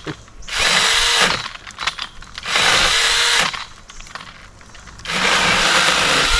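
IMOUMLIVE 6-inch brushless cordless mini chainsaw, mounted on its pole, run in three short bursts of about a second each with pauses between, its chain sawing at an overhead tree limb.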